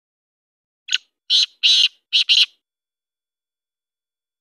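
Male black francolin calling: one phrase of five quick notes over about a second and a half. The first note is short, and the middle note is the longest.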